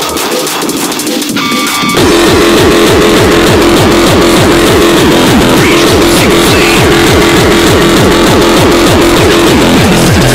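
Frenchcore hard electronic dance music. For about two seconds it plays without its low end, then the full track drops in with fast, pounding kick drums, each sliding down in pitch, under a held tone.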